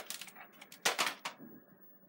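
A few sharp plastic clicks and knocks from a Nerf blaster being handled, the loudest about a second in.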